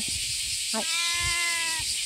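A tabby cat meowing: one long, drawn-out meow lasting about a second, starting a little under a second in.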